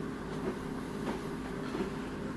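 A steady mechanical hum and rumble with a few faint clicks, the room sound around a muted television.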